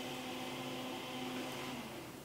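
A faint, steady low hum with a steady pitch, in a pause between speech. It fades slightly near the end.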